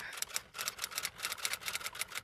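Typewriter sound effect: a rapid run of light key clicks, one per letter as a title is typed out.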